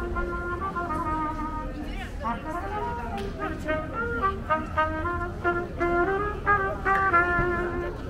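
Solo trumpet played by a street busker, a melody of short and held notes, louder toward the end, with people talking around it.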